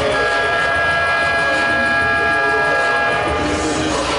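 A loud, sustained horn-like tone with several pitches sounding together, held steady for about three seconds and then cutting off, over the arena's background sound.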